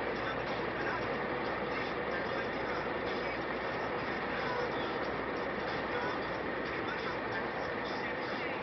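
Steady road noise of motorway driving: tyres and wind at speed, with no distinct event standing out.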